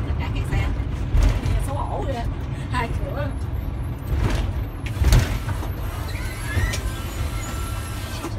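Steady low engine and road rumble of a city bus on the move, heard from inside the cabin, with a short rising whine near the end.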